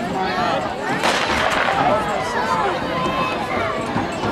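Starter's pistol firing once about a second in to start a footrace, its report trailing off in an echo over steady crowd chatter from the stands.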